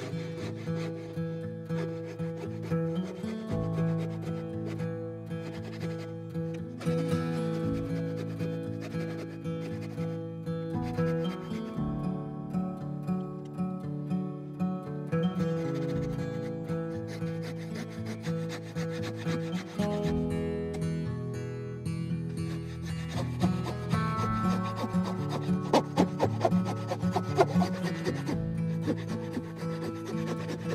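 Wooden bow saw cutting along a wooden guitar neck blank clamped to the bench, in repeated back-and-forth strokes that come quicker near the end. Background music plays underneath.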